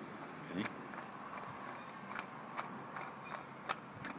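Light metallic clicks and ticks of a brass on/off valve being turned by hand into the neck of a paintball tank, about two to three a second.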